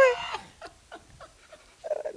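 A woman's laughing exclamation trailing off in a falling pitch, followed by faint breathy laughs and breaths. She starts speaking again near the end.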